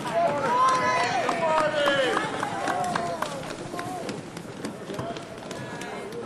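Several people's voices calling out and exclaiming, mostly in the first three seconds, with scattered sharp clicks throughout and open-air background noise.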